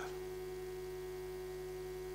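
Steady electrical mains hum with a faint buzz of several constant tones, unchanging throughout.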